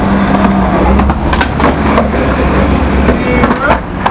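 Skateboard wheels rolling over concrete with a steady low rumble, broken by a few sharp clacks of the board.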